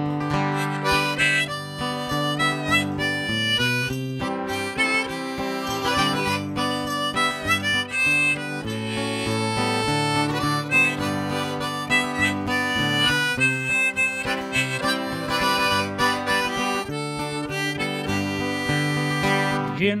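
Harmonica in a neck rack playing a melodic instrumental break over a strummed acoustic guitar, in a country-folk tune; singing comes back in right at the end.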